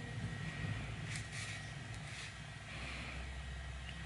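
Faint rustling of hands handling a crocheted wool hat and pulling yarn through its stitches, over a low steady hum.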